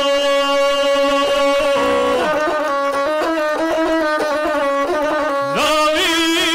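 Gusle, the single-stringed bowed folk fiddle, played with a guslar's epic singing: a held note for the first two seconds, then a quick run of changing notes on the gusle, with the voice coming back in near the end.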